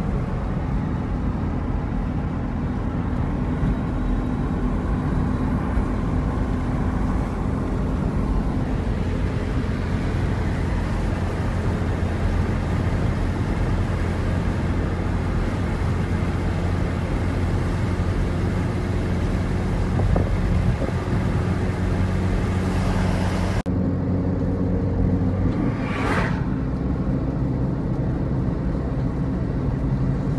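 Steady road and engine noise heard from inside a moving car at highway speed, a continuous low rumble with a droning hum. About three-quarters of the way through, the hiss drops off abruptly, and a short rushing whoosh follows a couple of seconds later.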